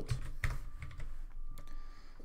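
Typing on a computer keyboard: a run of quick keystrokes that thins out to a few scattered clicks in the second half.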